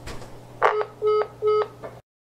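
A telephone call being hung up: a click about half a second in, then three short, evenly spaced beeps marking the end of the call, over a low steady hum on the line.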